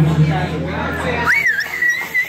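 A person whistling loudly in approval at the end of a song: one shrill whistle, starting a little past halfway, that rises, dips, holds and then falls away. The music fades out before it, under murmured voices.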